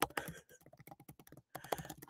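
Faint, rapid, irregular keystrokes on a computer keyboard, thinning out for a moment about halfway before picking up again.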